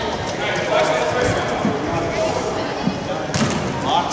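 Basketball bouncing a few times on a gym floor as a shooter readies a free throw, over people talking.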